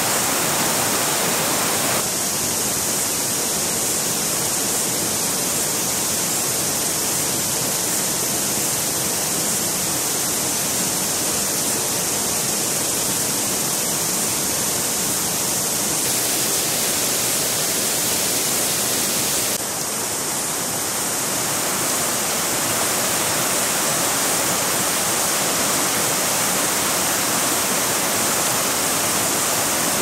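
Steady rush of fast-flowing river water, an even hiss with nothing else standing out; its tone changes abruptly about two seconds in and again about twenty seconds in.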